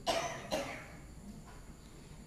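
A man coughs twice, the second cough about half a second after the first.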